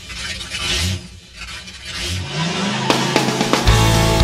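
Car sound effects at the start of a country-rock song: a car whooshing past, then an engine revving up with rising pitch. About three seconds in, the band's music comes in with guitar hits and then bass and drums.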